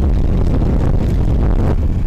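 Strong wind buffeting the microphone: a loud, steady low rumble.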